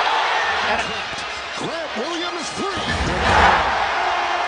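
Arena crowd noise in a basketball broadcast, with voices calling out in the middle, and the crowd swelling briefly near the end.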